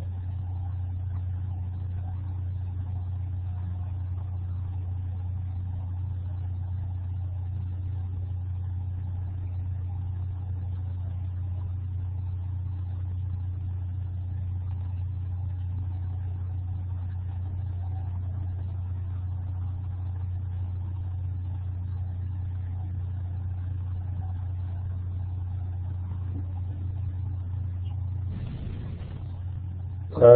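A steady low hum with faint background noise above it, unchanging in level, breaking off shortly before the end.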